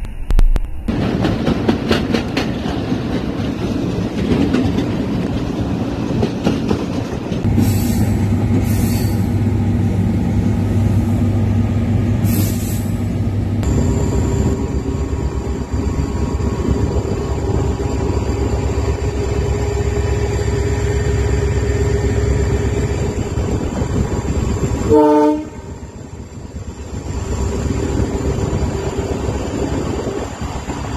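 Diesel-hauled train running, heard from on board: a steady rumble with the wheels clicking over the rails. Partway through, a steady pitched tone is held for about ten seconds, then cuts off, and the sound drops noticeably near the end.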